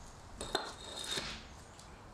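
Clay bricks being set against a car's rear tyre as wheel chocks: a sharp knock about half a second in, then a lighter clack and some scraping of brick on concrete.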